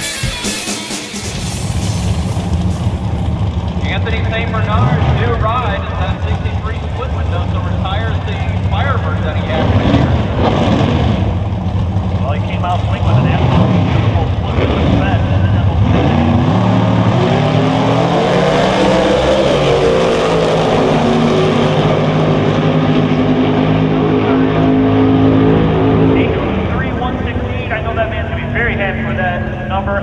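Outlaw 10.5 drag cars' engines running hard at the drag strip: revving and rumbling at the line, then launching about sixteen seconds in with a rising pitch and pulling at full power down the track before easing off near the end.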